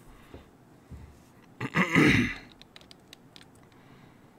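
A man clearing his throat once, about two seconds in, followed by a few quick light clicks.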